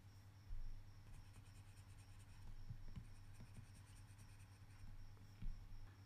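Faint taps and strokes of a stylus on a tablet screen while circles on a worksheet are coloured in, with a soft thump about half a second in and another near the end.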